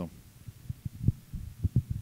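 Handling noise from a handheld microphone as it is passed from one person to another: a string of dull low thumps and rumbles, the strongest about a second in and again near the end.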